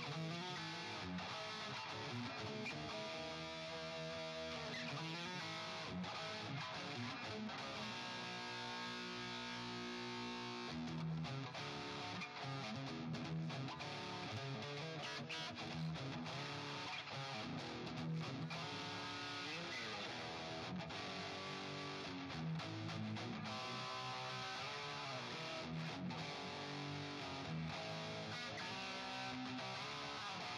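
Ibanez JEM 777 electric guitar played through a Fractal Audio AX8 amp-modeling patch: a continuous run of sustained lead notes, with a pitch bend about twenty seconds in.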